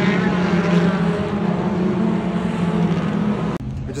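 Dirt-track race cars' engines running hard as the cars lap a clay oval, a dense, steady engine sound from the pack that cuts off abruptly near the end.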